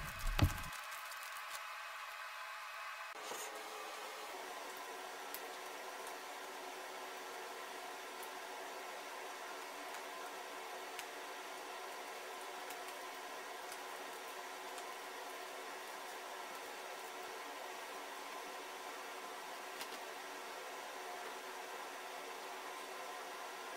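Steady faint hiss with a light hum, which is room tone or recording noise. A few faint ticks from handling are scattered through it.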